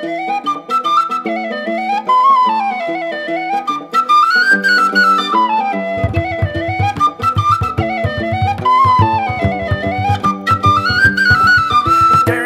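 Instrumental intro of a Celtic punk song: a tin whistle plays a fast, stepping folk melody over held accompaniment. About halfway through, the full band comes in with bass and drums.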